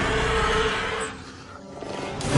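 A monstrous animated creature's roar, loud for about the first second and then dying away.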